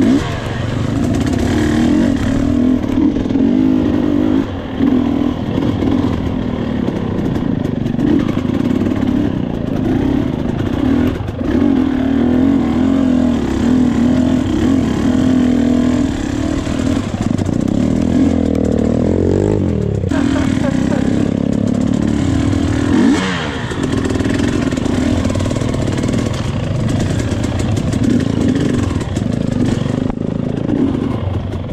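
Enduro dirt bike engine running under the rider on a rough, rocky trail. The throttle is worked on and off, with the pitch rising and falling sharply a little past halfway and again a few seconds later.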